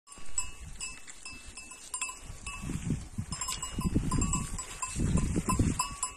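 Bells on a flock of grazing sheep clinking irregularly. Bursts of close rustling and tearing come in between, as the sheep crop grass near the phone.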